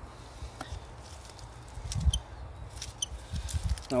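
Small garden snips cutting back strawberry leaves: a few short, sharp snips with a faint metallic ring, about two seconds in and again around three seconds, over a low rumble of handling.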